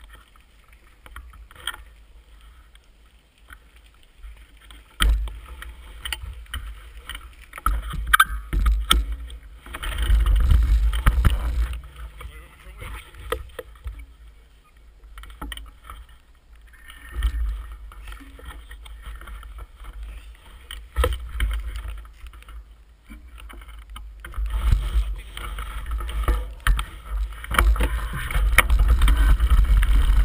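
Uneven low rumble and knocks on a mountain biker's camera microphone as the bike stops and moves off. It grows into a louder, steadier rumble over the last few seconds while riding down a gravel trail.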